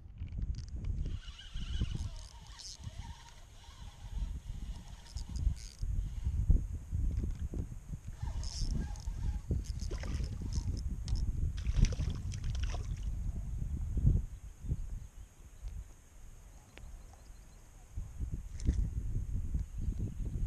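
Fishing from a lakeshore: irregular handling knocks from the rod and a light water splash while a small smallmouth bass is hooked and brought in, over a steady low rumble.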